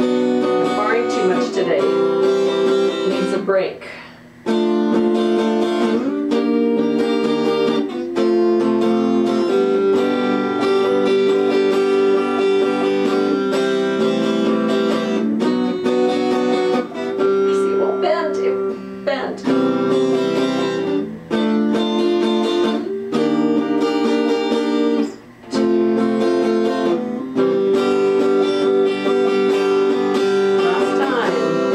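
Electric guitar strumming and picking chords in repeated phrases, with a brief break every few seconds.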